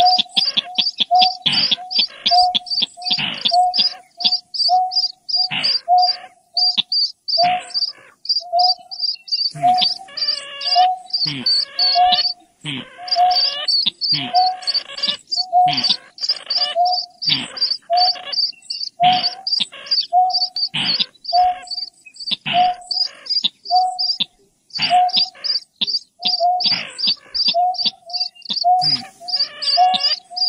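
Recorded night-bird lure calls of the greater painted-snipe and a rail playing together: a low hoot repeated about once a second under a fast, high chirping of about four a second, with bursts of harsher rasping calls among them.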